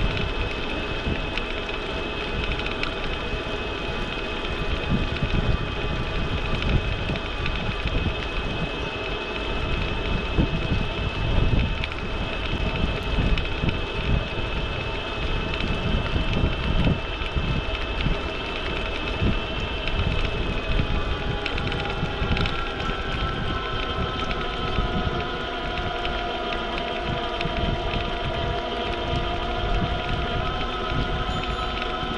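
Wind buffeting the microphone of a bike-mounted action camera while riding, with a steady high whine and lower hums from the moving bike. The hums shift in pitch about two-thirds of the way through.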